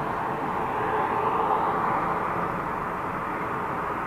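Highway traffic: steady tyre and engine noise of passing cars and a semi-trailer truck, swelling a little about a second in.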